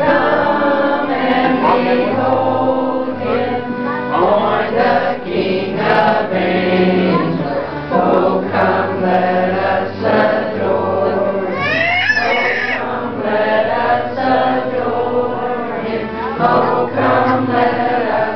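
A group of people singing a Christmas carol together, amateur voices over steady low sustained notes, with a brief high rising voice about two-thirds of the way through.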